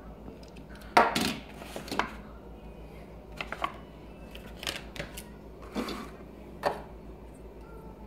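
Die-cast toy cars set down and handled on a wooden tabletop: a scattering of light knocks and clicks, the loudest about a second in.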